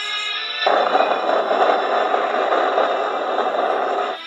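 Loud, crackly crunching of crispy fried chicken being bitten and chewed, starting under a second in and lasting about three seconds before cutting off. Background music plays underneath.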